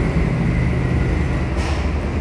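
Steady low rumbling background noise with no speech, with a brief soft hiss about one and a half seconds in.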